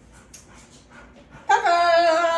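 A dog's long whining howl: one loud, steady, held cry that starts about one and a half seconds in.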